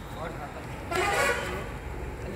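A vehicle horn honks once, about half a second long, about a second in, over faint background voices.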